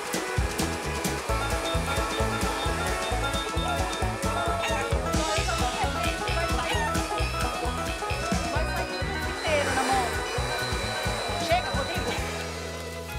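Background music with a steady beat, over a handheld hair dryer running and blowing hot air onto a foil-wrapped lock of hair.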